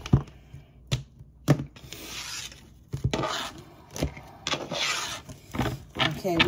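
A deck of tarot cards being shuffled by hand: several rasping passes of cards sliding against each other, broken by a few sharp taps.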